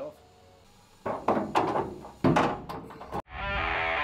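A series of about six sharp knocks or thuds, uneven in spacing, each ringing out briefly. Just after three seconds in they cut off and heavy rock music with electric guitar starts.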